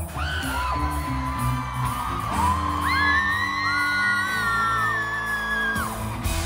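Live pop band music with long held high notes that glide up into pitch and hang for a few seconds, over a steady low bass.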